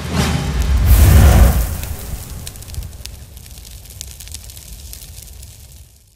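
Cinematic logo-sting sound effect: swelling whooshes build into a deep boom about a second in, then a long fading tail sprinkled with sparkling high ticks.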